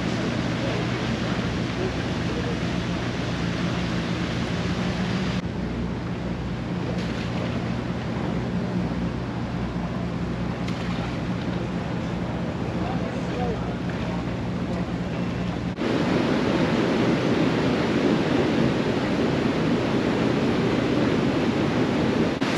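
A steady low motor hum under wind and water noise for most of the clip, broken by a few sudden edits. After a cut near the end it gives way to louder rushing, churning water.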